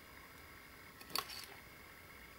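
Handling noise from a circuit board being turned over in the hands: a brief click and rustle a little over a second in, against quiet room tone.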